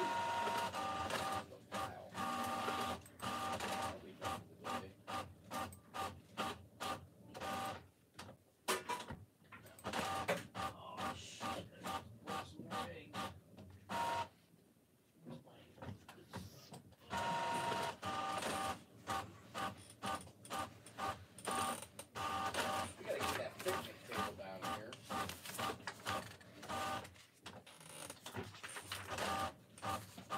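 A printer running, with a steady whine over a rapid run of clicking strokes, which pauses for about two seconds about halfway through.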